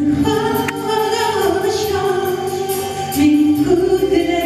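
A woman singing a melody with long held notes into a microphone, over instrumental accompaniment.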